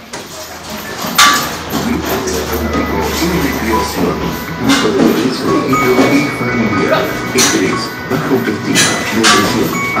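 Background music playing through the gym, cut by a handful of sharp slaps of boxing gloves landing during sparring, the loudest about a second in.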